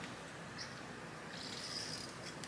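Faint sucking through the straw of a drink tumbler as a frappuccino is sipped, a soft hiss that comes briefly and then longer near the end.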